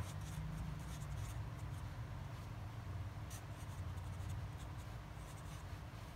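Pen writing on paper: faint, scattered scratchy strokes over a low steady hum.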